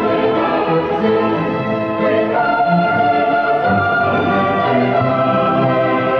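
Cathedral choir of boys' and men's voices singing sustained chords with orchestral accompaniment, ringing with a million echoes in the cathedral's long reverberation.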